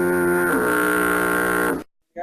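A loud, held horn-like musical tone with one small drop in pitch about half a second in, cutting off suddenly near the end.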